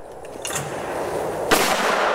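A shotgun fires once at a clay target about one and a half seconds in, a sharp loud crack followed by a long echoing tail. A brief sharp sound comes about a second before the shot.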